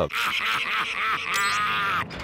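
Several men's voices shouting and jeering over one another, as a crowd of prison inmates taunting.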